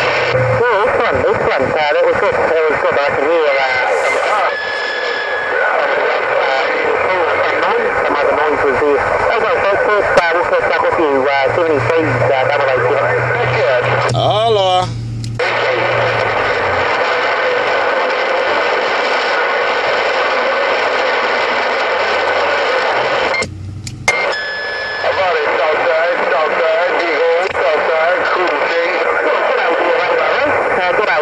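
HR2510 10-meter radio transceiver receiving distorted, unintelligible voice transmissions over steady band static, the signal of distant stations. The audio cuts out briefly twice, about 15 and 24 seconds in.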